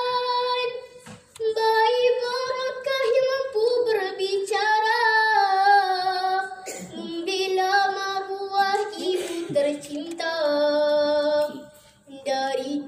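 A girl's solo singing voice, amplified through a microphone, holding long melodic notes that slide between pitches. The phrases pause briefly about a second in and again near the end.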